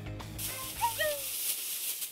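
Background music trailing off, then a steady hiss with two short falling whistle-like tones about a second in: an added sound effect from the show's editing.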